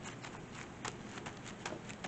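A hand pressing and rubbing a collage card flat onto a sketchbook page: faint paper rustling with a few light ticks.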